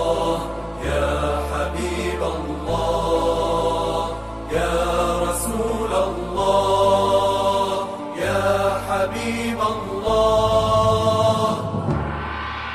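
Devotional chanted vocal music, with long held notes over a low drone that shifts pitch about every two seconds.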